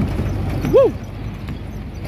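Old open-top jeep's engine running as it drives over a rough dirt track, heard from aboard the vehicle. A short rising-and-falling call comes about a second in.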